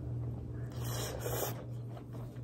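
A short scraping rustle about a second in, as noodles are taken up for a taste, over a steady low hum.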